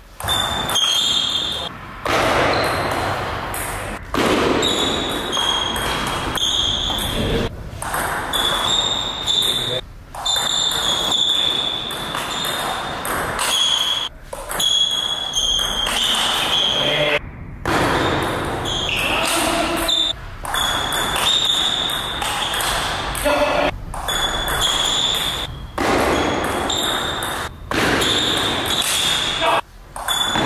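Table tennis rallies: the ball repeatedly clicking off the paddles and the table, in a reverberant hall with indistinct voices throughout.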